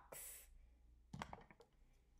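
A short breath, then a few faint clicks about a second in as a felt-tip marker is handled, against near-silent room tone.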